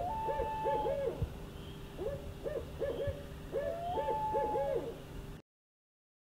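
Owl hooting: groups of short hoots, some led by a longer held note, cutting off suddenly about five seconds in.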